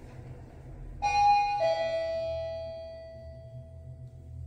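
Electronic arrival chime of an OTIS-LG Si1 elevator sounding a falling two-note "ding-dong" about a second in, the lower note ringing on and fading; the two-note pattern is this elevator's down-direction arrival signal. A steady low hum runs underneath in the car.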